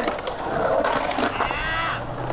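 Skateboard wheels rolling across the concrete of a skatepark bowl, a steady rolling noise as the skater carves.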